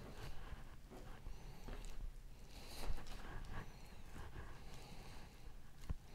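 Faint handling sounds of raw chicken-thigh trimmings being pushed onto a bamboo skewer and squeezed together by hand over a plastic cutting board: scattered soft taps and squishes, with one slightly louder knock a little before the three-second mark.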